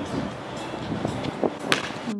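A basketball being dribbled on an outdoor hard court, with a couple of sharp bounces close together near the end over steady open-air noise.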